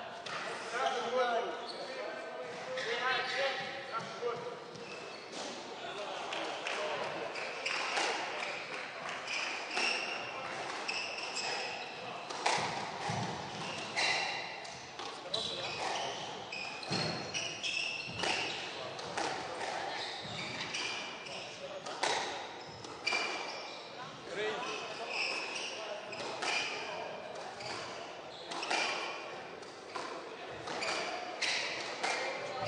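A squash rally: the ball cracking off rackets and walls in quick irregular strikes, with short high squeaks of shoes on the court floor.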